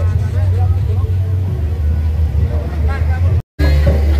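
Deep, steady bass from a carnival sound system, with people's voices over it. The sound cuts out for a split second near the end.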